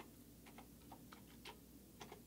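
A few faint keystrokes on a computer keyboard, single clicks spaced unevenly over near silence.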